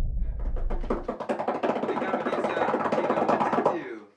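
Dramatic suspense sound effect: a deep rumble dies away about a second in, under a fast run of sharp clicks, about ten a second. The clicks cut off suddenly just before the end.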